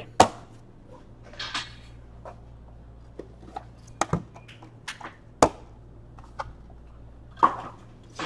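Trading cards being handled on a table: a few scattered sharp taps and clicks as cards are set down and squared, with a brief sliding swish about a second and a half in, over a low steady hum.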